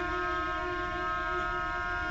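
Orchestra holding a soft, steady sustained chord of several pitches in a contemporary classical piece.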